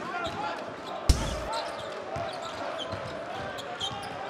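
Basketball arena crowd noise, a steady din of many voices, with one sharp loud bang about a second in.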